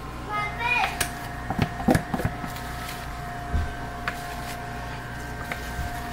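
Light knocks and taps from a plastic container being handled over a silicone soap mold while the last soap batter goes in, mostly in the first couple of seconds with one more a little past the middle. A faint steady tone runs underneath from about half a second in.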